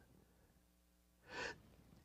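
Near silence, with one short breath drawn in by a man about a second and a half in.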